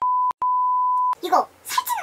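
A steady high-pitched censor bleep in two parts, a short one, a brief break, then a longer one of under a second, masking spoken words. A voice speaks right after it.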